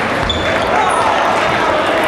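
Table tennis ball clicking as it bounces on the table and is struck, over the steady chatter of a crowded sports hall.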